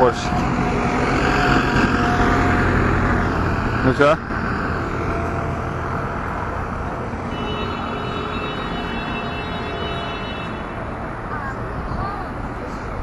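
Compact street sweeper running as it passes close, its rotating front brushes sweeping the paving, with a steady whine over the engine. It is loudest for the first four seconds, then eases into general street noise.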